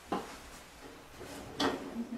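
Two short knocks about a second and a half apart, with faint room sound between.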